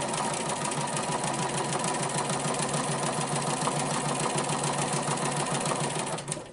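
Bernina Aurora 440 QE domestic sewing machine running steadily at speed, the needle and hopping foot stitching rapidly through a quilt sandwich in free-motion ruler work.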